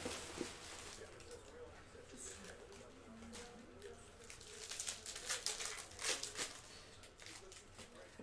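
Quiet crinkling and rustling of plastic wrapping as a trading card is handled, with a cluster of crackles about five to six and a half seconds in. Faint muffled voices sit underneath.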